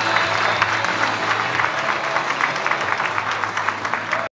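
Audience applauding: dense, steady clapping, with the tail of the backing music still faintly under it at first.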